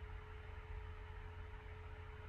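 Faint steady background noise: a low hum with a thin steady tone above it and light hiss, with no distinct event.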